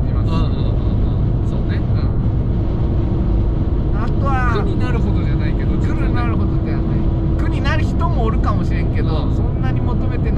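Cabin noise inside a Fiat 500 1.2 cruising at highway speed: a steady engine and road-tyre rumble, with a steady hum joining about three seconds in.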